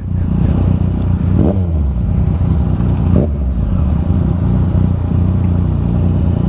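Motorcycles idling at a stop, a steady low rumble: the Yamaha FZ-09's three-cylinder engine together with a second bike alongside.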